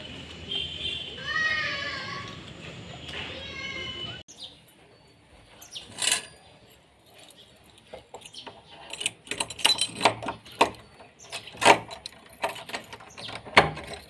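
Keys jingling and clicking against a door lock and latch as the door is unlocked: a run of sharp metallic clicks and rattles that thickens in the second half. Before that, about four seconds of street noise with a couple of short high calls.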